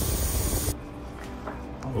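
Steady hiss of car cabin noise while driving, which cuts off abruptly under a second in, leaving only faint room sound with a few soft rustles.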